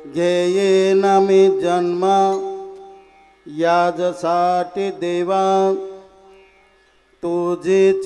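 A man singing a devotional Marathi kirtan melody in long, drawn-out phrases of held notes. The singing breaks off about three seconds in, resumes, dies away around six seconds, and a new phrase begins near the end.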